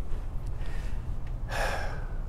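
A man's short audible breath, about one and a half seconds in, in a pause in his talk, over a steady low hum.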